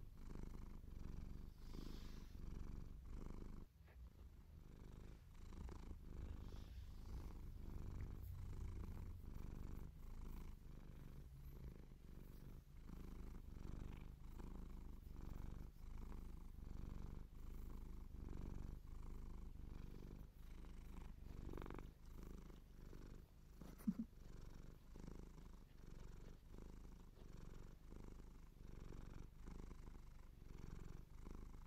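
Domestic cat purring steadily, its purr pulsing in an even rhythm while it is scratched. A single short sharp click about three-quarters of the way through.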